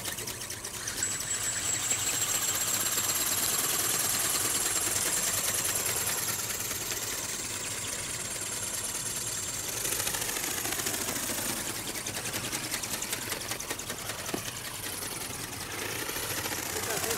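Small electric radio-controlled ornithopter flying overhead: its motor and flapping gear drive give a rapid, fast ticking buzz. A thin steady high whine runs through the first ten seconds or so, and the sound is louder in the first half.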